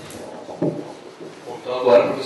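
A table microphone being handled, with a short knock about half a second in, then a person's voice close to the microphone near the end.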